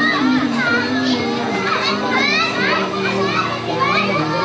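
Many children shouting and calling out at once as they play in the pool, with music held underneath.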